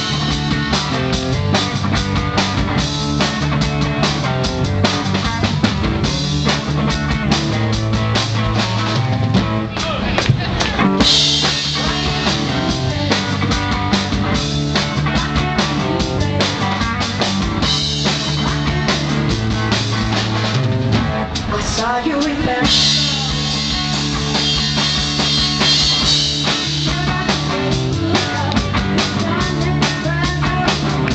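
Live rock band playing full out: drum kit, electric guitar and keyboard. The band briefly thins out about two-thirds of the way through, then the full band comes back in, with crashing cymbals.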